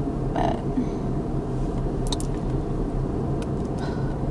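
Steady low hum of a car idling, heard inside the cabin, with a short murmur about half a second in and a few faint clicks later on.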